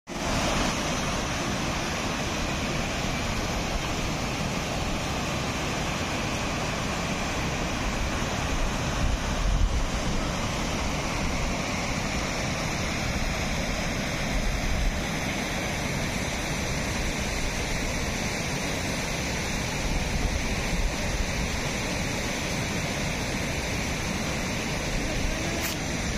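River water rushing steadily over a low concrete weir and down its stepped spillway, with a few brief gusts of wind buffeting the microphone.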